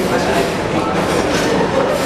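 Dining-hall din: many people talking at once over the meal, with dishes and cutlery clinking now and then.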